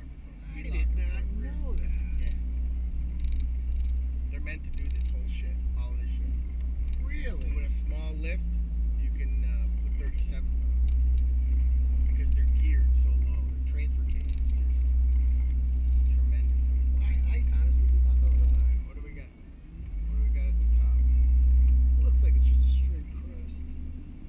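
Mercedes G320 engine running steadily at low revs under a heavy low rumble. The rumble dips briefly about three-quarters of the way through and falls away near the end.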